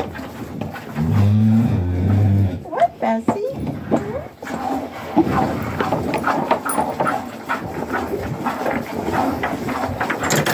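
A Jersey cow gives one low moo about a second in, lasting about a second and a half.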